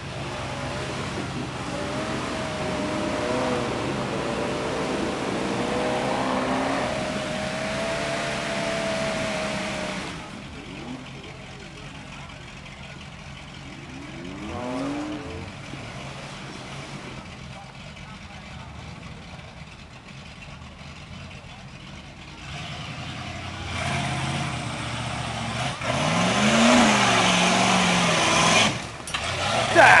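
Engine of a tube-frame off-road buggy revving hard as it crawls through a deep mud hole. It is loud for the first ten seconds, drops to a lower, quieter run through the middle, then revs up again, rising and falling near the end.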